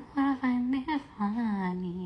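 A woman singing a slow melody into a handheld karaoke microphone, in two phrases of long held notes, the second drifting downward and ending near the end.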